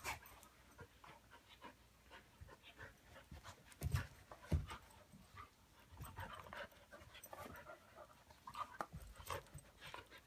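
Two dogs play-wrestling, panting as they mouth at each other, with scuffling throughout and two louder thumps about four seconds in.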